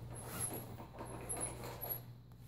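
Faint rustling of satin ribbon lacing being pulled through the metal grommets of a corset, with a few brief thin high squeaks.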